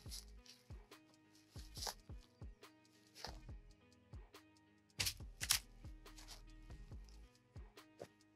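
A handgun fitted with a red dot sight being dropped onto dirt and handled: scattered light clicks and knocks, with two louder knocks about five seconds in. Faint background music runs under it.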